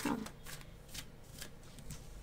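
A deck of tarot cards being shuffled by hand: several soft, quick shuffling strokes of card against card.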